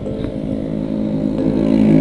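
Small-engine motor scooters passing close by in traffic, their engine drone growing louder toward the end.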